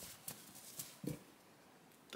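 Near silence with three faint soft knocks and rustles of plush toys being handled and pressed together.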